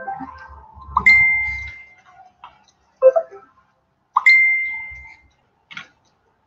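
Two identical bright dings about three seconds apart, each a single high tone that rings for under a second and fades, with a short knock between them.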